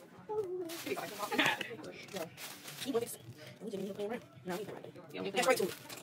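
Indistinct voices talking in a small room, no clear words, with a couple of brief hissing noises.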